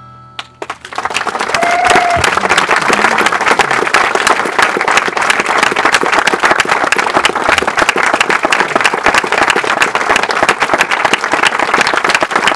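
Audience applauding at the end of a song, the clapping building quickly about a second in and then holding steady and loud.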